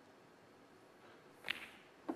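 A snooker cue striking the cue ball: one sharp click about a second and a half in, against a quiet arena.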